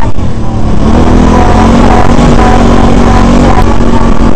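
Can-Am Renegade 800R ATV's V-twin engine running under throttle while riding a dirt trail, its pitch rising and falling with engine speed over a heavy low rumble.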